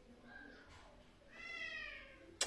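A cat meowing: one drawn-out meow in the second half that rises and then falls in pitch.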